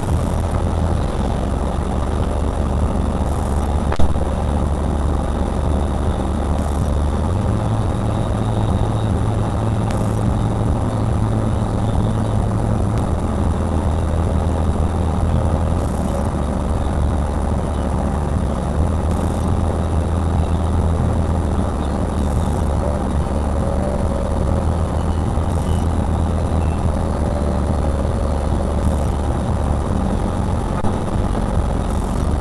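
Car engine idling with a steady low hum, heard from inside the cabin through a dash camera's small microphone; the hum shifts pitch slightly a few times. A single sharp click about four seconds in.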